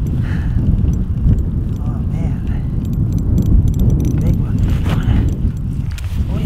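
Wind buffeting the microphone, a loud rough rumble, with faint clicking from a small ice-fishing reel being cranked in.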